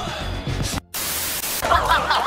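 Edited-in sound effects over background music: a brief cut to silence a little under a second in, then a short burst of loud static hiss, followed by wavering, warbling high sounds.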